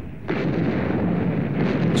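Artillery shellfire: a dense rumble of gunfire and shell explosions that comes in about a third of a second in and keeps going.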